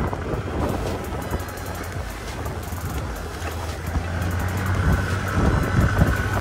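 Motor scooter running while ridden along a road, with wind buffeting the microphone in gusts; a faint steady whine joins the engine about four seconds in.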